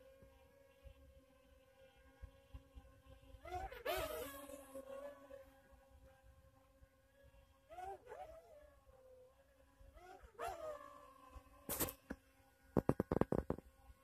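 DJI Tello mini quadcopter's motors and propellers whining faintly with a steady hum, its pitch swooping briefly three times as it manoeuvres. A quick run of sharp clicks near the end.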